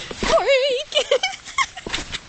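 A high, wavering vocal cry about half a second long, among other short excited vocal sounds.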